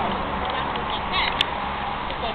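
Steady hiss of city traffic on a wet street. Just past a second in there is a brief high-pitched vocal sound, followed by a sharp click.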